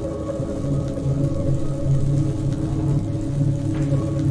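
Live-coded electronic music from TidalCycles: a dense, sustained drone of layered chord tones over a low, pulsing bass.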